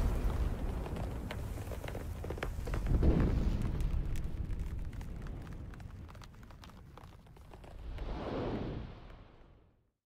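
Cinematic logo-intro sound effects: a deep boom rumbling away, a second hit about three seconds in with crackling ticks over it, and a last swell near the end that fades out to silence.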